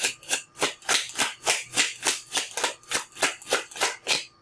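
A deck of tarot cards being shuffled by hand, a steady rhythm of short card swishes, about three a second.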